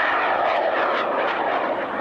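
High-power rocket motor firing as the rocket climbs after liftoff: a steady rushing noise with no change in pitch.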